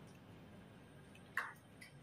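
Near silence, broken by one short faint click about a second and a half in and a fainter tick just after.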